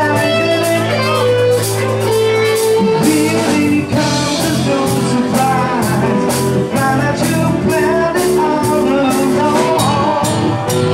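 Live blues-rock band playing loud: electric guitar and bass over a steady drum beat, with a pitch-bending sung line. The bass holds one low note for about the first three seconds, then moves.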